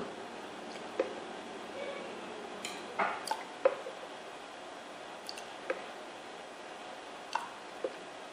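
Spoonfuls of milk poured into a saucepan of hot butter-and-cocoa frosting base: a few short, faint drips and splashes, a cluster about three seconds in and a couple more near the end, over a low steady hiss.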